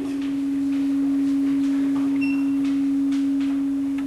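Sound-system feedback: one steady pure tone at a low-middle pitch rings on, swelling slightly in loudness.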